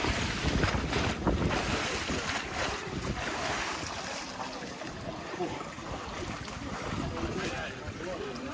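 Water splashing and sloshing in a small plunge pool as a man dunks under and comes back up. It is loudest in the first second or two, then settles into lapping water.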